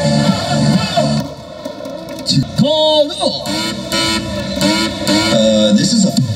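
Cheer music and a voice over stadium loudspeakers; the music thins out a little after a second in, a voice swoops up and down near the middle, and the beat picks up again towards the end.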